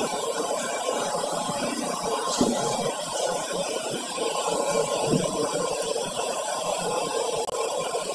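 Steady ship's machinery noise, a constant hum and hiss, with a couple of faint knocks.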